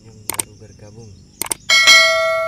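YouTube subscribe-button animation sound effect: two sharp mouse clicks about a second apart, then a loud bell ding near the end that rings on.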